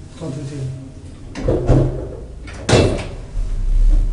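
Doors of an old DEVE hydraulic freight elevator being worked: a clattering slide and then a loud bang about three seconds in. A low, steady rumble follows near the end.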